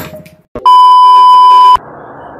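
A single loud electronic bleep: one steady tone held for about a second, switching on and off abruptly, like a censor bleep or edit sound effect. Background music fades out just before it.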